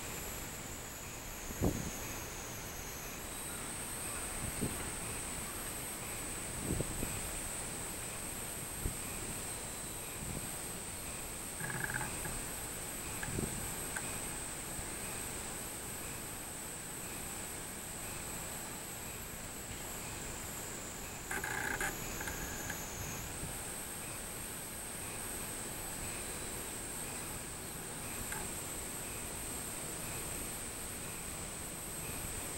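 Robust cicadas (minminzemi) singing from the trees, a steady high-pitched drone that steps up in pitch about three seconds in and again about two-thirds of the way through. There are a few soft low thumps and two brief mid-pitched bursts.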